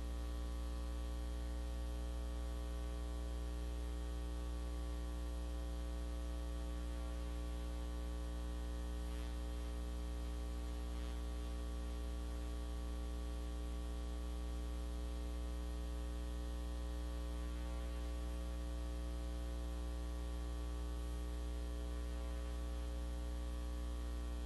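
Steady electrical mains hum with a stack of overtones over a light hiss, unchanging throughout.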